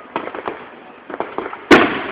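Fireworks going off at a distance: scattered sharp pops, then one much louder bang near the end.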